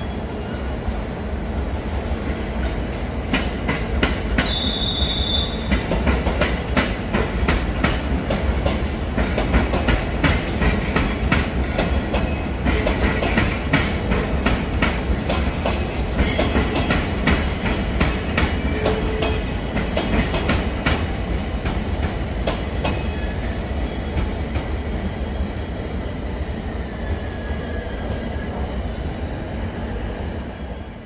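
JR East E655 series "Nagomi" train running past on a station track, its wheels clicking over the rail joints in a long run of sharp clicks over a steady rumble. A brief high wheel squeal comes at the start and another about four seconds in.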